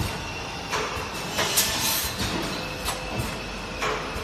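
Automatic plastic ampoule forming, filling and sealing machine running, with a regular clack and short hiss repeating about every three-quarters of a second over a steady mechanical noise.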